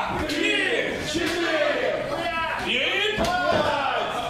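Clubbing forearm blows from one wrestler landing on a bent-over opponent's back, three sharp hits spread across a few seconds. Shouting voices run between them.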